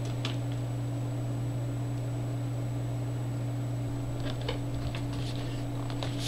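Steady low hum, with a few faint light clicks and knocks of the laptop and screwdriver being handled about four to five seconds in.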